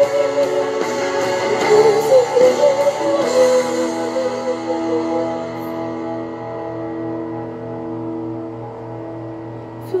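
A woman singing a slow worship song into a microphone over a guitar backing track. Her wavering held note ends about three seconds in, and the backing track's sustained chords carry on, growing quieter, until her voice comes back in at the very end.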